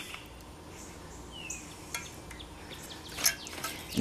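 A few soft clicks from a hand caulking gun being squeezed to lay a bead of adhesive, with a short falling bird chirp about one and a half seconds in.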